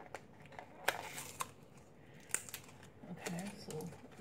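A small paper-and-cardboard product package being worked open by hand: crinkling and rustling paper with a few sharp clicks or snaps, about a second in and again past two seconds.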